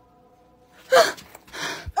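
A woman's sharp, startled gasp about a second in, followed by a quicker, softer breath.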